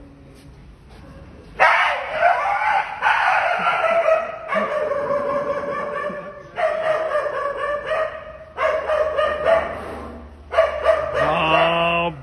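A dog howling and whining in a run of drawn-out, slightly falling calls, each a second or two long with short breaks between them, starting about a second and a half in.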